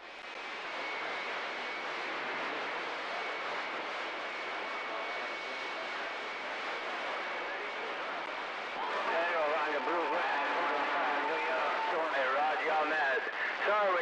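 CB radio receiver hissing with open-channel static and a faint steady whistle. About nine seconds in, a weak, garbled voice comes through the static with a steady tone over it.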